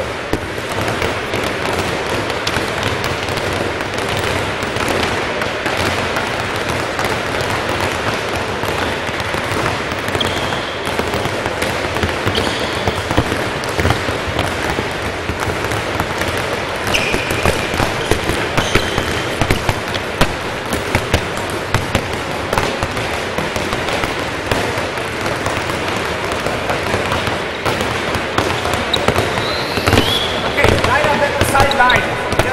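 Many handballs being dribbled at once on a wooden sports-hall floor: a steady, overlapping clatter of bounces, with a few short squeaks from athletic shoes on the floor.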